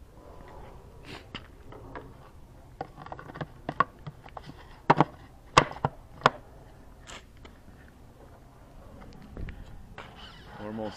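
A series of sharp clicks and light knocks from hands handling an RC model airplane's airframe, loudest and closest together in the middle of the stretch.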